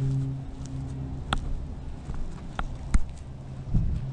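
A few sharp clicks and taps, like footsteps and handling of a handheld camera on a walk around the trailer, over a steady low hum.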